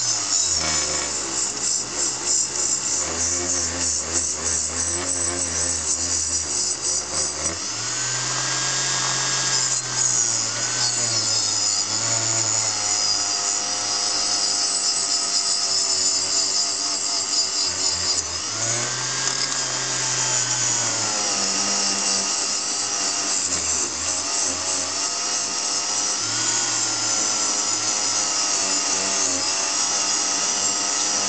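Small electric bench-top power tool motor running with a steady whine, its pitch rising and falling back a couple of times as it is worked.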